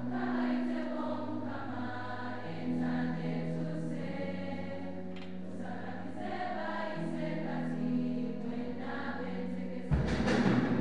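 A congregation choir of girls' voices singing a hymn together, over long held low notes that shift every few seconds.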